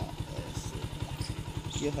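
A small motorcycle engine running with a steady, rapid low putter, carrying the rider and passengers. A few faint bird chirps sound above it.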